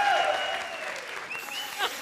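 Studio audience applauding, the clapping fading away over the two seconds, with a voice heard over it near the end.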